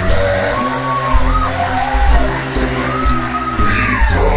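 A cappella gospel singing: several voices in harmony over a deep bass part, the top voice holding long notes.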